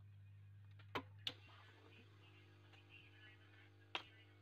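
Low, steady mains-type hum with three light, sharp clicks: two close together about a second in and one near the end, as small parts are handled on a workbench.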